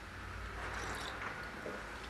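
A man drinking a sip of coffee from a small cup, faint, over a low steady hum.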